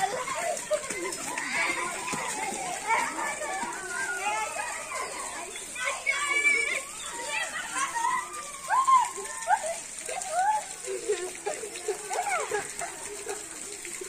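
Children's voices calling and chattering, scattered short shouts and calls with no clear words.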